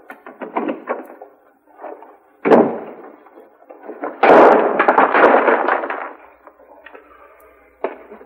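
Quick footsteps, then a door slamming about two and a half seconds in, followed a second and a half later by a louder, longer clatter of knocks and rattling.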